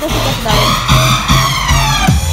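Loud electronic dance music from a DJ set over a club sound system: a siren-like synth sweep rises and then falls over a repeating bass line.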